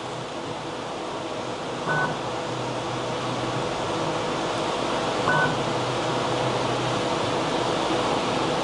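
Flashforge Adventurer 5M Pro 3D printer running its start-up bed calibration: a steady whir of fans and motion that slowly grows louder, with a short high chirp twice, about three seconds apart.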